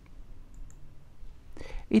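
Two faint clicks about half a second in, over a low steady hum, in a pause of a man's speaking voice, which starts again near the end.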